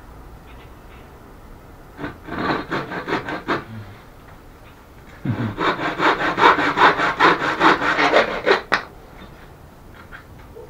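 Handsaw cutting through a wooden board in back-and-forth strokes. A short run of strokes comes about two seconds in, then a longer, louder run of about four strokes a second starts about five seconds in and stops a second before the end.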